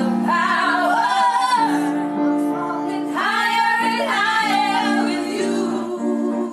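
A group of young women singing a pop song together over held keyboard chords, in two long phrases, the second starting about three seconds in.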